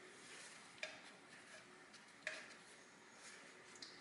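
A few faint, sharp metallic clicks and taps against near silence: a compression tester's hose fitting being handled at a spark plug hole. The clearest come about a second in and past the middle, with weaker ones near the end.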